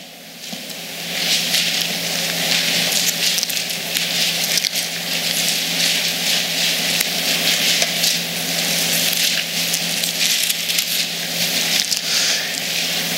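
Thin Bible pages being leafed through by many people at once: a congregation turning to a passage. It makes a continuous crackling rustle that swells in within the first second.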